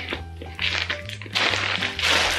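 Background music with a steady low beat, over which a plastic mailer bag crinkles as it is cut open with scissors and pulled apart, louder from about halfway through.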